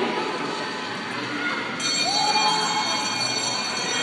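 Indoor arena crowd noise. About two seconds in, a bell starts ringing steadily, in short-track racing the signal of the last lap.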